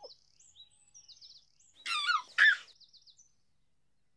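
Birdsong: quick, high, repeated chirps, with a louder, falling high-pitched call about two seconds in.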